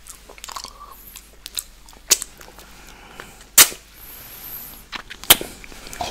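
Close-miked wet licking and mouth sounds as milkshake is licked off fingers, broken by three sharp wet pops, the loudest about three and a half seconds in.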